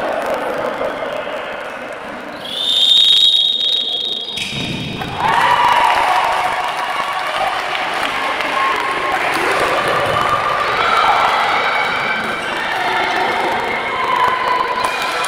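A referee's whistle blown in one long blast of about two seconds, a couple of seconds in, echoing in a sports hall. Around it are voices calling out and the thuds of a handball bouncing on the wooden court.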